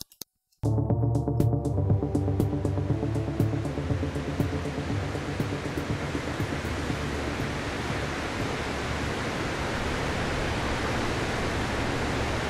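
Recorded music starting about half a second in and crossfading smoothly into steady ocean surf noise; the music has faded out by about five or six seconds in, leaving only the surf.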